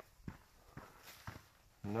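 Footsteps of a hiker walking on a trail, a faint stroke about every half second, with the rustle of gear. A man's voice starts just before the end.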